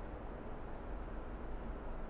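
Quiet, steady room tone: a low hum under a faint, even hiss, with no distinct sound events.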